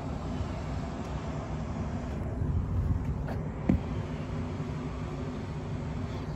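Steady low background rumble with a faint hum, and one sharp click a little past the middle.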